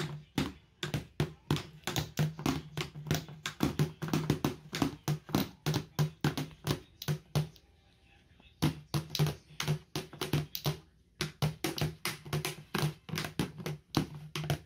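A toddler beating a small plastic toy drum with two plastic mallets: quick, uneven strikes, several a second, each with the same low pitch. The drumming breaks off for about a second just past the middle and briefly again a little later.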